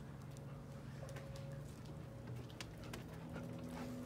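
Faint scuffs and light ticks from two dogs playing and running, over a steady low hum.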